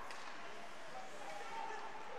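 Faint, steady ice-rink arena ambience: an even low hiss with faint distant voices.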